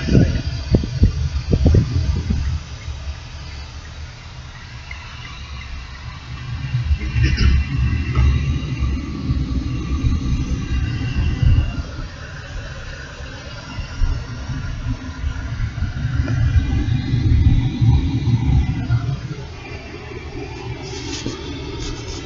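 Car interior noise while driving: a low rumble of engine and tyres on the road, growing louder and softer as the car's speed changes. A few short knocks sound in the first two seconds.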